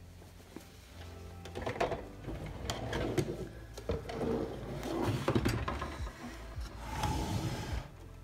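Handling noise of sewing work: an ironing board being shifted and fabric gathered up and carried to a sewing machine, a string of knocks, clicks and rustles starting about a second and a half in, under quiet background music.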